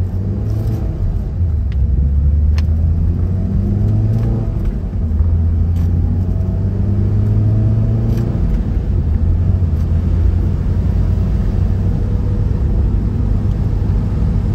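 2008 Mazda MX-5 Miata's 2.0-litre four-cylinder engine pulling the car up through the gears on a test drive with the top down, the engine note rising, dipping for an upshift about five seconds in, then rising again, over steady road and wind noise.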